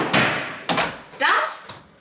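A white built-in cupboard door pushed shut by hand, closing with a single sharp knock at the start.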